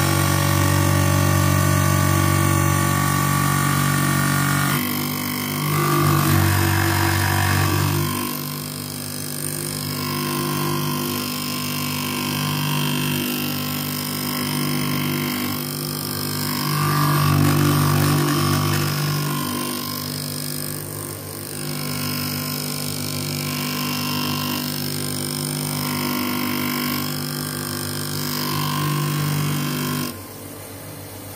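Semi-automatic optical lens edger running: its motor hums steadily while a clamped spectacle lens turns against the grinding wheel. The grinding swells and eases every two to four seconds, and the whole sound drops a little about eight seconds in.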